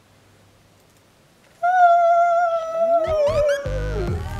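An edited-in sound effect comes in about a second and a half in: a held tone that wavers slightly and slowly sags in pitch. Upward-sweeping glides pile in near three seconds, and a deep bass starts just before the end as music begins.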